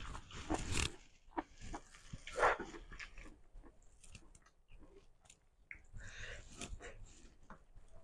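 Close-miked eating sounds: a person chewing, with irregular wet mouth clicks and crunches. They are loudest in the first second, peak once about two and a half seconds in, and pick up again around six to seven seconds.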